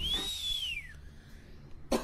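A single whistle that rises and then falls in pitch over about a second, over a low steady rumble. A short noisy burst comes just before the sound cuts off.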